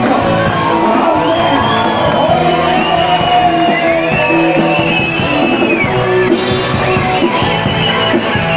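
Live rock band playing loud, with a singer's voice over guitar and keyboard; long held high notes bend in pitch through the middle.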